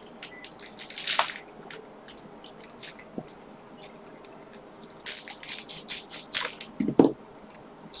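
Foil Pokémon booster-pack wrappers crinkling as a handful is handled and worked open. There is a short cluster of crisp crackles about a second in and a quicker run of crackles from about five to seven seconds.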